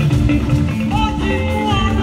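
Church choir singing a praise hymn into microphones, several voices together over amplified instrumental backing.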